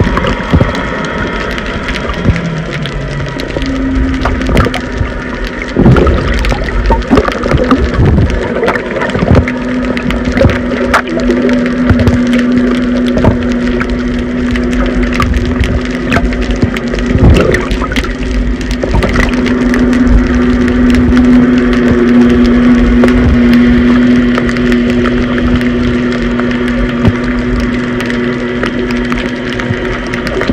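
Underwater sound through a phone's microphone: a muffled wash of water with many small clicks and crackles. A steady low hum comes in about four seconds in and holds on.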